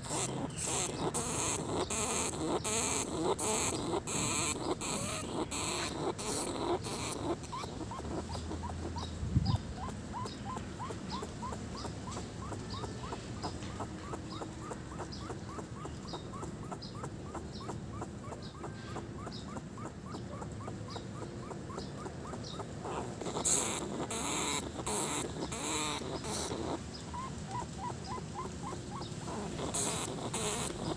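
Large rat trapped in a rusty wire-mesh cage trap, biting and rattling the metal mesh in a run of sharp clicks. Then comes a long stretch of quicker, regular ticking with small chirps, and a few more sharp clicks near the end.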